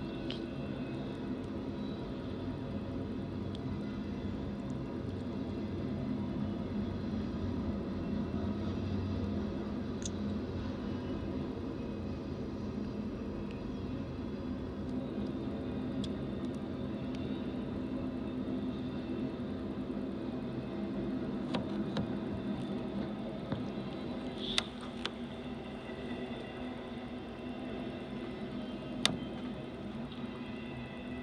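BNSF intermodal freight train rolling steadily past: a continuous rumble of wheels on rail under a low drone, with a few short sharp clicks in the last few seconds.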